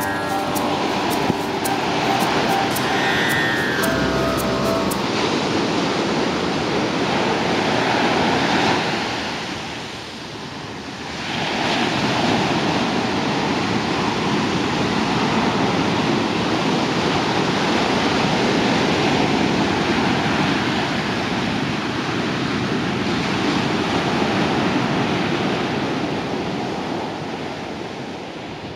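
Ocean surf washing onto a beach, a steady rushing that dips briefly about ten seconds in and fades away at the end. Soft instrumental music fades out over the first few seconds.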